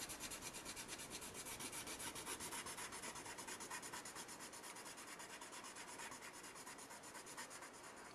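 Prismacolor colored pencil shading on Bristol paper: a faint, scratchy rubbing in quick, even back-and-forth strokes, several a second, laid on with light pressure.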